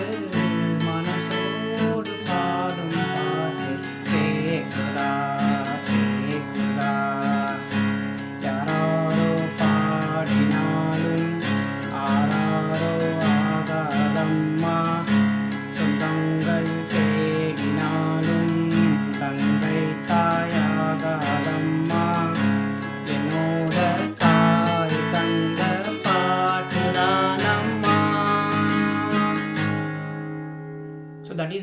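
Acoustic guitar capoed at the fourth fret, strummed steadily at full song tempo through A minor, D minor, F major and E suspended-fourth chord shapes, sounding in C sharp minor. A man's voice sings the melody along with it.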